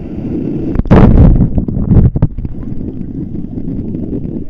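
Seawater splashing and churning right at the microphone, with a loud splash about a second in that lasts about a second and a half, over steady wind noise on the microphone.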